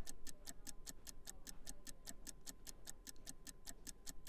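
Countdown-clock ticking sound effect: a fast, even run of light ticks, about seven or eight a second.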